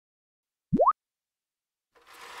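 A single short cartoon 'bloop' sound effect about three-quarters of a second in: a quick tone that sweeps sharply upward in pitch, alone in silence.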